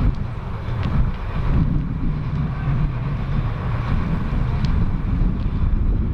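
Wind buffeting the camera microphone: a steady, loud low rumble with no clear events in it.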